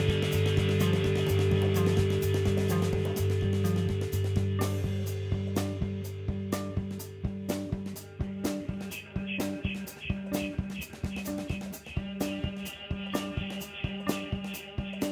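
Live band playing instrumental music on electric guitar, keyboards and drum kit. A held low drone fades away over the first half and gives way to a repeating pattern of short notes over steady drum hits, joined by a quick high pulse in the second half.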